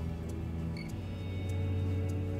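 Background music: held low bass notes with a light ticking beat about twice a second and a brief higher chime about a second in.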